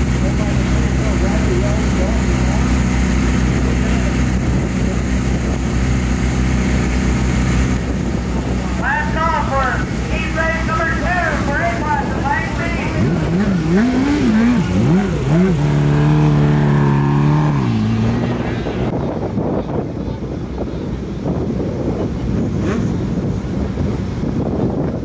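Dirt-track race car engines running: a steady low hum, then about eight seconds in an engine is revved in quick rising-and-falling blips, held at a steady pitch and let fall away.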